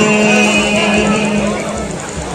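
Kirtan music: one long held note, fading away over about a second and a half, with soft drum beats underneath, between sung phrases.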